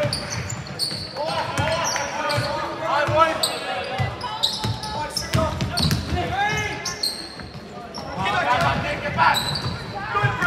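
Basketball being played on a hardwood court in a large gym: the ball bouncing, shoes squeaking sharply on the floor, and players and spectators calling out, all echoing in the hall.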